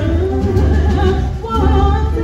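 Live jazz: a woman's voice sings a held, wavering line over piano, upright bass and drums, with the bass pulsing steadily underneath.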